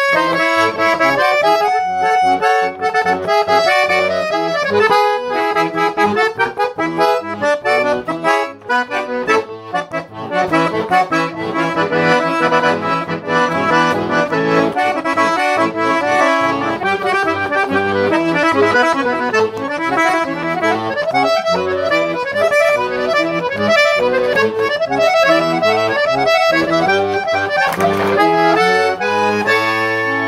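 Todeschini Super 6 piano accordion being played: a continuous melody on the treble keys over left-hand bass notes and chords.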